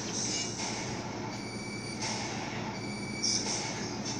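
Dog howling in a series of long, high notes with short breaks between them.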